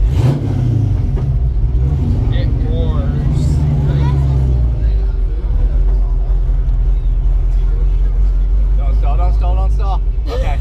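A classic car's engine running at low speed with a deep, steady rumble, its pitch rising briefly as it is revved just after the start and again a few seconds in.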